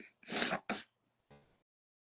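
Woman crying: two short, noisy sobbing breaths about half a second in, then a brief low whimper.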